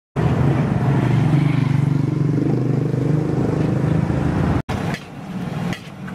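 A motor vehicle engine runs steadily and loudly, then breaks off abruptly about four and a half seconds in. Quieter scraping and clinking of a metal spatula in a large wok follows.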